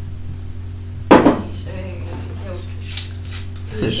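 A sharp clatter of kitchenware about a second in, followed by a few lighter clinks and knocks, over a steady low hum.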